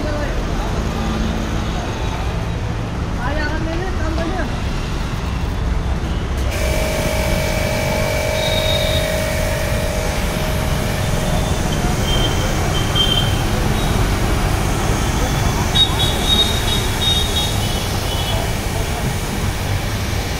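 High-pressure washer running, its jet spraying water onto a scooter; the hiss of the spray comes in suddenly about six seconds in. Street traffic and voices run underneath.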